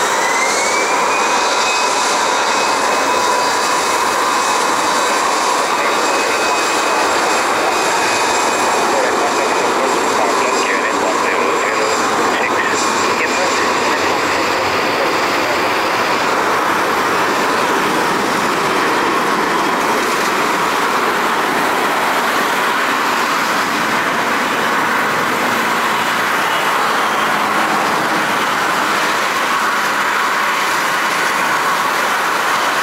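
Airbus A320 jet engines spooling up for a takeoff roll on a wet runway: a whine rising in pitch over the first second or two, then holding steady over loud, even engine noise.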